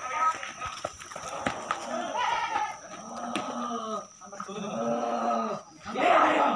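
A person's voice moaning in two drawn-out, wavering cries, the second longer and steadier, with a bleat-like quality.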